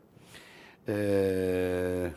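A man's voice holding one steady low note for about a second, starting about a second in: a drawn-out hesitation sound.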